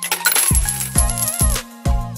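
A bright coin-jingle sound effect rings out at the start and lasts about a second and a half, over background music with a steady beat.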